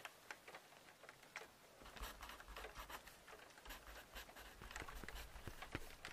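Faint, irregular scratching and light clicks over a low background hiss, with a soft low rumble from about two seconds in.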